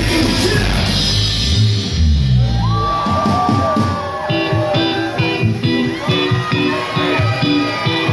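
Live hip-hop band playing loud amplified music with vocals over a full kit. About three seconds in, the heavy bass drops away and a lighter, rhythmic section of repeating notes carries on under the voice.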